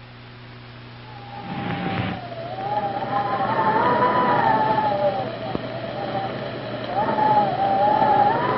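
A wavering, theremin-like electronic tone that slides up and down in pitch, as in a 1950s science-fiction soundtrack. It comes in after a faint low hum, with a brief whoosh of noise at about a second and a half.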